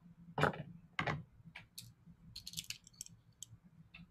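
Computer keyboard and mouse clicks picked up by a meeting participant's microphone: two louder taps about half a second and a second in, then a quick run of lighter clicks, over a faint low hum.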